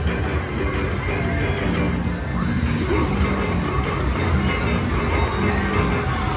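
Slot machine playing its bonus-round music during free spins, a run of short held notes over the steady noise of a busy casino floor.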